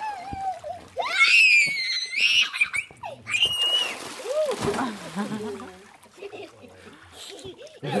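A child squealing at a high pitch for about a second and a half, with a shorter cry after it, then water splashing in a swimming pool.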